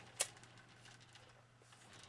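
A single short, sharp click about a quarter of a second in, then near-silent room tone.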